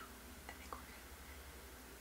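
Quiet room tone: a faint steady low hum with a couple of soft clicks.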